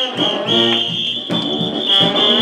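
Brass-band music playing, with a high shrill tone coming and going over it.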